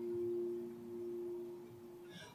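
Acoustic guitar chord left ringing: one low note holds on steadily and slowly fades, with no new strums.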